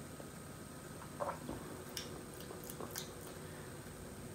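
A few faint, short clicks and smacks from a person tasting beer from a can, over quiet room tone: first about a second in, then again around two and three seconds in.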